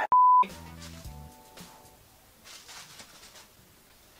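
Test-tone beep over a colour-bars test card used as an edit transition: a single loud, steady, pure high beep lasting about a third of a second. It is followed by about a second of faint low steady tones.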